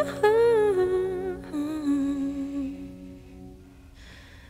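A woman's voice humming a wordless melody with vibrato, stepping down in pitch through a few held notes and fading away about three seconds in, over a soft sustained low accompaniment.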